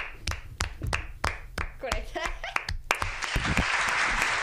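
Hand claps from a few people in a small studio, sharp single claps about three a second. About three seconds in, the sound of a large crowd applauding starts up and carries on.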